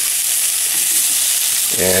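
Chicken and vegetables sizzling steadily in a nonstick frying pan over a burner just turned up to higher heat.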